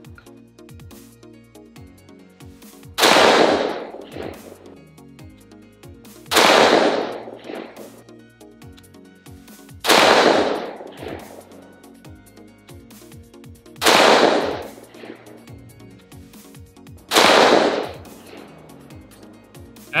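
Five single shots from a CMMG Mk57 Banshee AR-15 pistol chambered in 5.7x28mm, fired slowly, about 3 to 4 seconds apart, each report ringing out for about a second.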